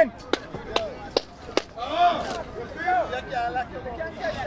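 Four sharp clicks a little under half a second apart, then a man's voice calling out.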